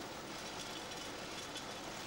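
Sweets-wrapping machine running, a steady even mechanical noise at low level with no distinct clicks or beats.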